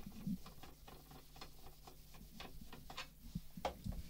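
Faint background: a low steady hum with scattered, irregular light clicks, one a little louder near the end.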